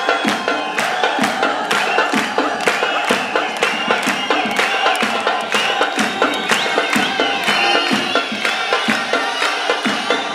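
Live Gilgit-Baltistan folk music with drums keeping a fast, steady beat of about three strokes a second. An audience is clapping along and cheering over it.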